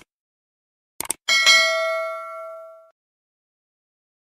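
Subscribe-button sound effect: a mouse click at the start and a quick double click about a second in, then a single bell ding that rings out and fades over about a second and a half.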